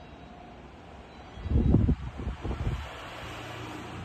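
Irregular low rumbling buffets of wind or handling noise on a handheld microphone: a burst of about a second and a half starting a little before halfway, over a faint steady low background hum.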